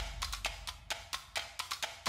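Suspense music built on rapid percussion hits, about six a second, played as a drum roll. The deep bass underneath drops out and the hits turn thinner and quieter for these two seconds.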